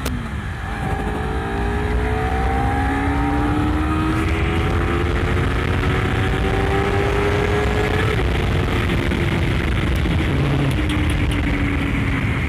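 Honda CBR250RR's 250 cc parallel-twin engine accelerating hard in Sport+ mode, heard from the rider's seat: the revs drop with an upshift at the start, then climb steadily through third gear for about eight seconds. After that the throttle eases and the engine note levels off and falls slightly.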